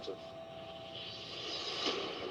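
Film-trailer sound design: a swelling whoosh that builds to a short hit near the end, over a faint held music tone.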